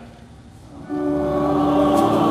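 Church organ and voices come in about a second in on a long held chord, with steady low notes underneath.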